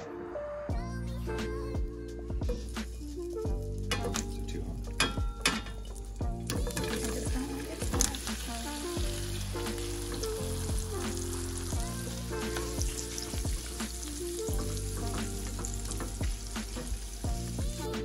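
Marinated paneer cubes sizzling in hot oil in a stainless steel pan as they are laid in to sear. The sizzle fills out and grows steadier a few seconds in.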